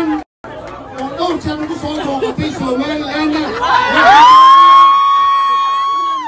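Crowd chatter and voices at an indoor party, briefly cut off just after the start. About four seconds in, one voice slides up into a long high held cry that lasts about two seconds over the crowd.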